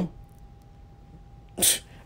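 A man's single quick, sharp breath noise about one and a half seconds in, after a quiet pause with only a faint steady tone behind it.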